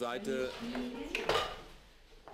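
Small toys clinking and clattering as young children play with them on the floor, with a few sharp clicks a little past the middle, and a faint child's voice in the first second.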